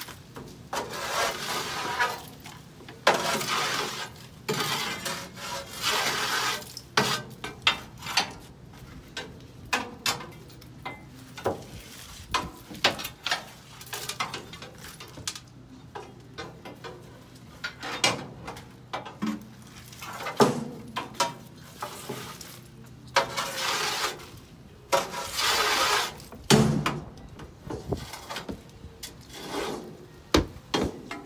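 A long metal tool scraping debris out of the steel clean-out area of a garbage truck, in repeated strokes a second or two long, with sharp knocks and clatter as the tool and debris hit the metal and fall into a plastic bin. A faint steady low hum runs underneath.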